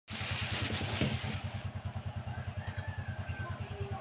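Low, steady rhythmic throb of a running motor, pulsing about six or seven times a second. A hiss lies over it for the first second and a half.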